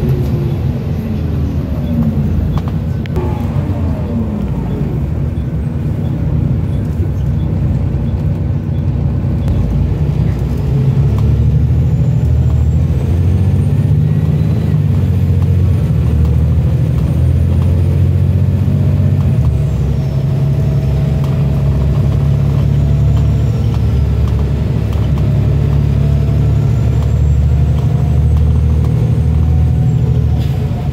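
Volvo B7TL double-decker bus's diesel engine and driveline heard from inside the passenger saloon. A whine falls away in the first few seconds as the bus slows, then the engine drone grows louder about ten seconds in as it pulls away and keeps running under power.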